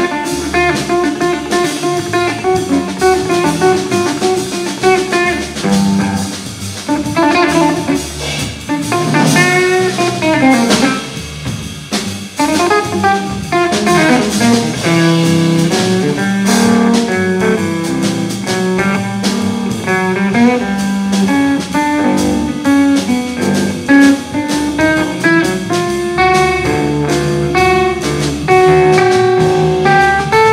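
Live jazz trio jamming: electric guitar playing lines over walking upright bass and a drum kit with steady cymbal strokes, with some sliding notes about a third of the way in.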